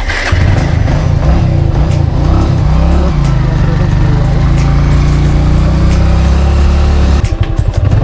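Motorcycle engine running as it is ridden, its revs rising and falling over the first few seconds, then holding steady until the sound changes about seven seconds in.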